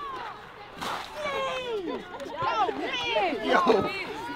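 Group of young football players shouting and whooping excitedly, several high voices overlapping and getting louder, with laughter near the end.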